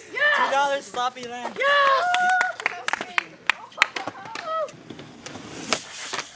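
Several voices calling out in the first two and a half seconds, then a run of scattered sharp clicks and knocks.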